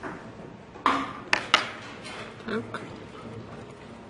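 A few sharp clicks and taps of a metal hand tool against a printed circuit board and its components, the loudest three close together a little past a second in, with two weaker ones after.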